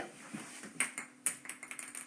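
A few light taps and clicks from a phone being handled, with its battery running low.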